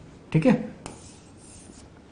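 Marker pen drawing on a whiteboard: a faint rubbing stroke lasting about a second as a box is drawn around a written answer, just after a brief spoken word.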